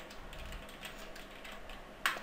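Typing on a computer keyboard: a quick, irregular run of faint key presses.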